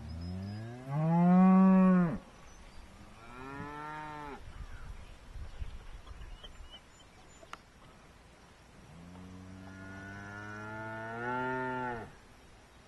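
Cattle mooing: three moos. The first is the loudest, rising in pitch and ending about two seconds in, a shorter second follows, and a long third one starts near the end, rising as it closes.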